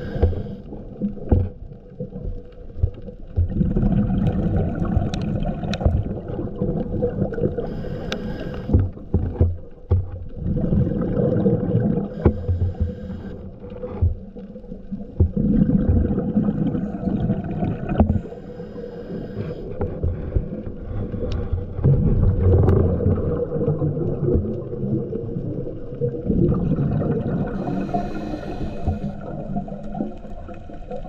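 Scuba diver breathing underwater through a regulator: a hiss on each inhale and a burst of rumbling, gurgling exhaled bubbles, a breath every five seconds or so. A faint steady hum runs underneath.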